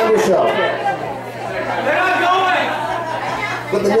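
Chatter of several people talking at once in a large room.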